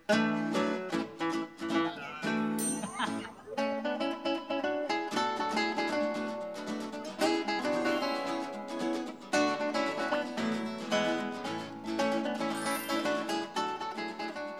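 Background music led by a plucked acoustic guitar, with quick picked notes throughout.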